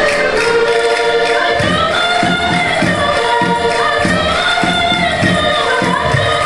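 Portuguese chula folk music: a group singing together over accordion accompaniment. About a second and a half in, a steady low beat comes in, roughly three strikes every two seconds.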